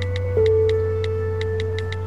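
Film score of sustained electronic tones over a steady low drone, the upper note stepping down about half a second in, with a quick run of light ticks, about four a second.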